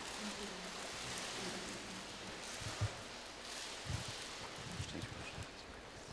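Quiet church room sound: faint rustling and shuffling of people moving around the altar, with a few soft knocks like footsteps or handling, over a steady hiss.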